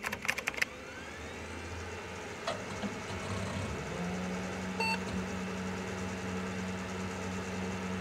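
Electronic sound design for a logo reveal: a quick burst of glitchy digital clicks, then a steady low drone, with a deeper hum coming in about halfway and a short high beep just after.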